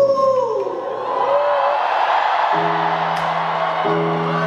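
A man's sung note glides down and ends at the start, then a concert crowd cheers and screams. About two and a half seconds in, a steady held instrumental chord begins.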